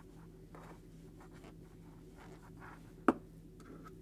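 Faint, soft rustling of a 10 mm crochet hook drawing plush polyester chenille yarn through stitches while single crocheting, with one sharp click about three seconds in.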